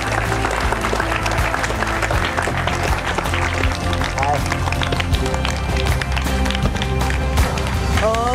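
Audience applauding over background music with a steady bass line.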